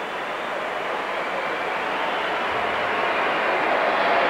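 Stadium crowd noise, a steady even hubbub that grows slowly louder.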